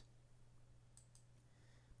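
Near silence over a low steady hum, with two faint computer-mouse clicks about a second in.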